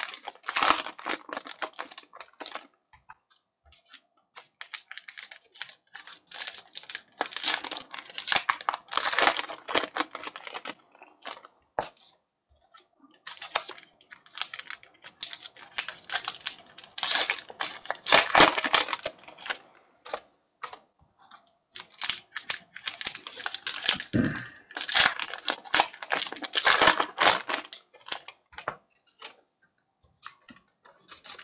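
Baseball trading cards being flipped and slid through the hands one after another: rapid runs of light card-on-card clicks and snaps in bursts with short pauses, with some rustling of the foil pack wrapper.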